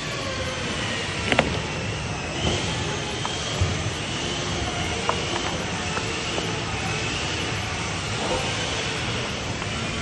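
Steady din of a busy indoor hall, with a few sharp knocks and clatters as corrugated roofing sheets are handled and laid, the loudest about a second and a half in.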